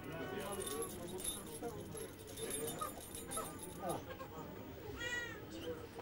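Indistinct voices of several people talking at once, with a short, high-pitched vocal sound about five seconds in.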